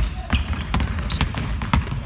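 Several basketballs dribbled on a hardwood gym floor, their bounces overlapping in a quick, irregular rhythm.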